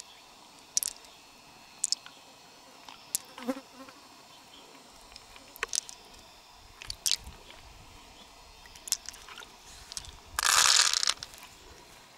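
Sharp, isolated wet clicks and squelches as fingers pick beads out of an opened freshwater mussel's flesh and the beads click together in the palm. Near the end there is a louder noisy rustle lasting under a second.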